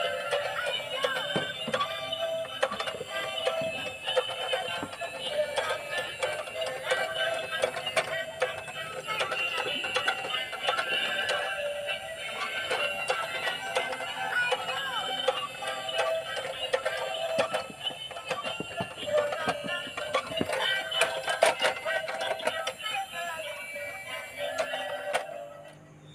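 Tayo 'Alice' ambulance dancing toy playing its built-in electronic tune with synthesized singing as it drives along and sways side to side. The music fades out near the end.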